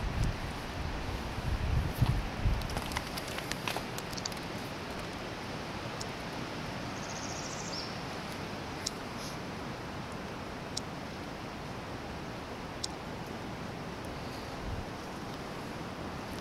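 Steady outdoor background hiss in woodland, with low bumps and knocks of the handheld camera being moved in the first few seconds, a brief high chirp about seven seconds in, and a few faint clicks.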